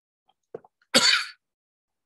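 A man coughs once, a short single cough about a second in.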